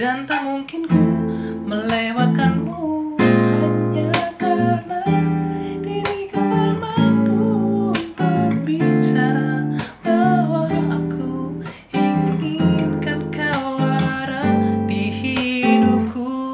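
Taylor 214ce-N nylon-string acoustic-electric guitar fingerpicked through the song's chorus in jazzy seventh and eleventh chords (major 7, minor 7, 11), a new chord struck every second or so and left to ring, with a couple of brief breaks.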